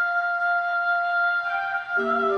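Background score: a single flute-like note held steadily, with a second, higher note joining faintly near the end.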